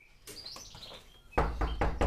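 Faint bird chirping, then knuckles knocking on a wooden door in a quick series of raps from about one and a half seconds in.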